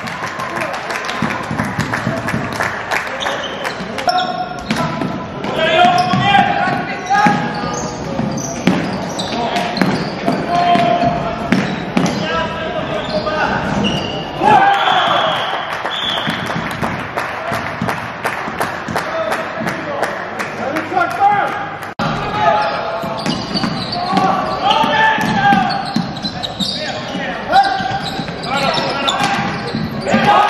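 Live floorball play in a sports hall: frequent sharp clacks of sticks on the plastic ball and on each other, sneakers squeaking and pattering on the court floor, and players shouting to one another, all echoing in the large hall.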